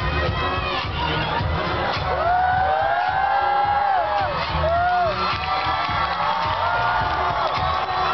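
Dance music with a steady bass beat playing over loudspeakers, with an audience cheering and long high-pitched whoops about two seconds in and again just before the fifth second.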